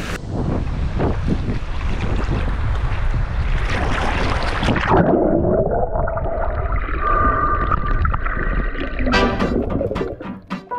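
Sea water splashing and rushing against an action camera held at the surface. About five seconds in, the sound abruptly turns dull and muffled as the camera goes underwater.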